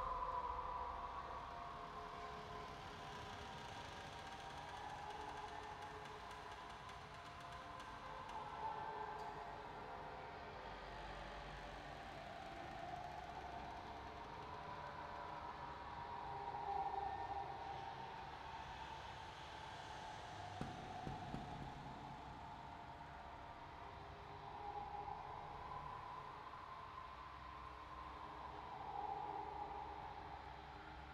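Ghostly Halloween ambient drone: faint wavering tones that slowly rise and fall in pitch over a low hum, with a few faint clicks about two-thirds of the way through.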